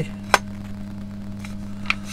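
Steady low electrical hum, with a sharp click about a third of a second in and a fainter click near the end as the opened tillerpilot's plastic housing is handled.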